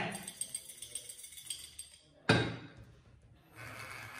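Four xóc đĩa chips rattling inside a white plate covered by an upturned bowl as it is shaken, a quick run of small clicks, then about two seconds in a single knock as the covered plate is set down on the table.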